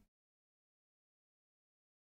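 Near silence: no sound at all.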